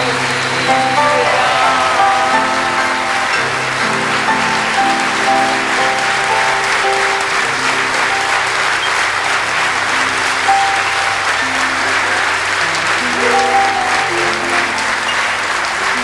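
Theatre audience applauding steadily, with instrumental music playing held notes underneath.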